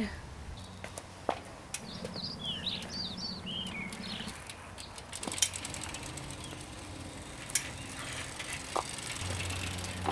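Outdoor ambience in which a small bird gives a quick series of short descending chirps about two seconds in, with a few faint clicks scattered through the rest.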